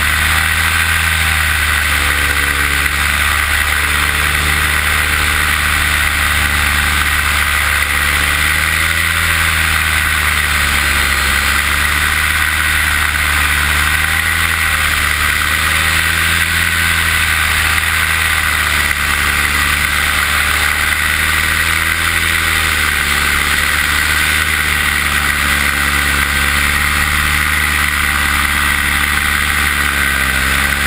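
Paramotor engine and propeller running steadily in flight, the engine note rising and falling gently every few seconds.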